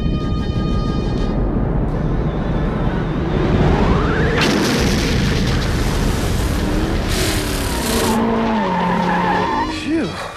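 Animated sci-fi sound effects for a travel beam: a steady rumbling noise, a rising whoosh about four seconds in that breaks into a burst of hiss, another burst of hiss shortly after, and a short run of falling musical notes near the end.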